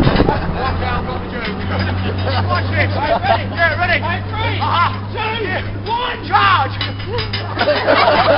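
Crowd of onlookers chattering and laughing, several voices overlapping, over a steady low hum.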